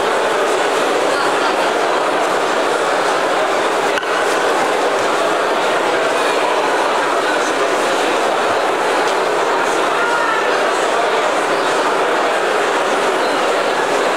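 Crowd chatter: many guests talking at once in a large hall, blending into a steady babble with no single voice standing out.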